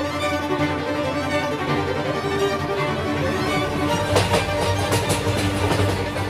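Background music led by bowed strings such as violins, with a run of sharp percussive hits in the second half.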